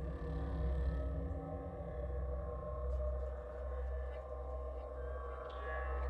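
Ambient background music: a low, steady drone of held tones.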